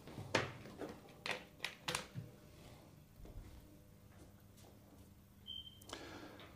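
A few faint clicks in the first two seconds as a switch-start fluorescent light fitting is powered up and its starter flicks the tube on, over a faint steady mains hum.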